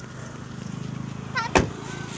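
Car door slammed shut about one and a half seconds in, a single sharp thud, over the steady low hum of a car engine running.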